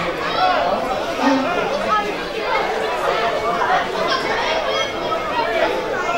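Many children's voices calling and shouting over one another on a football pitch, with no single voice standing out.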